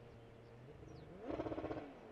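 Porsche 911 GT3 R race car's flat-six engine idling with a low, pulsing rumble, then briefly revved about a second and a half in as the car moves off after a spin.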